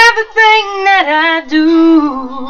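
A woman singing a slow ballad line unaccompanied, her pitch stepping down about a second in to a long held low note.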